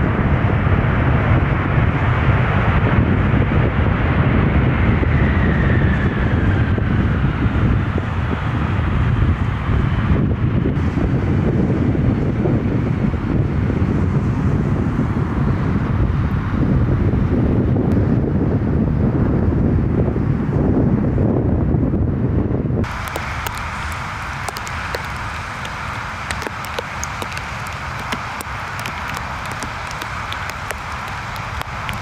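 Boeing 747 freighter's four jet engines running loud and steady as it rolls along a wet runway: a deep rumble with a faint whine that falls in pitch as the aircraft passes. About 23 s in, this cuts off abruptly to quieter wind and rain noise on the microphone.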